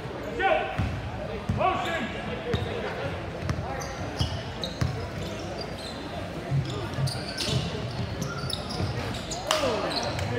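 A basketball dribbled on a hardwood gym floor, with sneakers squeaking in short high chirps as players cut and stop, over the chatter of the crowd.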